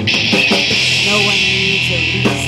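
Live rock band playing an instrumental gap between vocal lines: electric guitar chords over a drum kit with steady cymbal wash.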